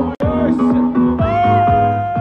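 Electronic dance music played from DJ decks through a loudspeaker, with a steady kick drum at about two beats a second. The sound cuts out for an instant just after the start, and a long held synth note comes in about halfway through.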